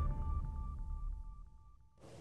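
The fading tail of a TV programme's opening theme: a held electronic tone with faint, evenly spaced ticks, dying away.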